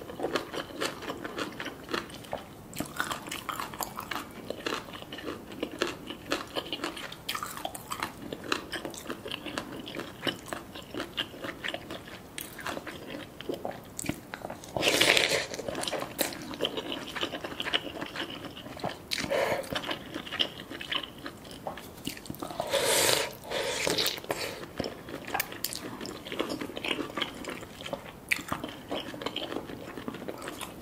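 Close-miked eating sounds of noodle soup: steady wet chewing and mouth smacks on noodles and vegetables, with two louder, longer slurps of noodles and broth about halfway through and again near three-quarters of the way.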